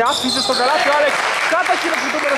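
Basketball being dribbled on a hardwood court during a game.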